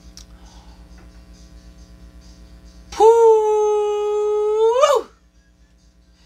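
A woman's voice holding one long, steady note for about two seconds, its pitch rising sharply at the end before it breaks off.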